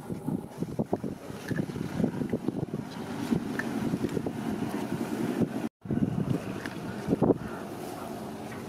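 Wet squelching and irregular clicking as marinated chicken feet on bamboo skewers are handled in a bowl with a gloved hand, over a steady rushing noise like wind on the microphone. The sound cuts out abruptly for a moment about three-quarters of the way through.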